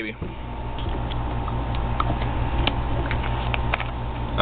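A few faint, scattered plastic clicks as the cap of a new plastic e-juice bottle is twisted and worked open, over a steady low hum.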